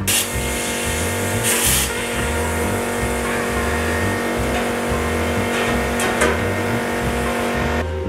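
Gasless flux-core semi-automatic wire welder running a bead on sheet steel: a steady crackling hiss with a few louder spatter pops, cutting off abruptly near the end. Background music plays underneath.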